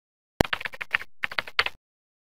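A quick, irregular run of clicks like typing on a computer keyboard: a sharp first click, then about a dozen more over a second and a half, stopping abruptly.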